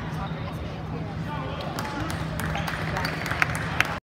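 Crowd chatter echoing in a gymnasium during a basketball game. From about two seconds in, sharp knocks and squeaks come from the court, with two short, loud squeaks near the end, as play resumes on the hardwood.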